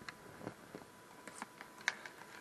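Scattered light clicks and taps at an irregular pace, with a sharper click near the end, over a faint steady high tone.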